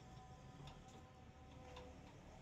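Near silence, with a few faint clicks scattered through it.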